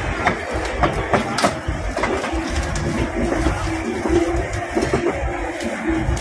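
Outdoor market ambience: a steady background hubbub with scattered sharp clicks and clatters.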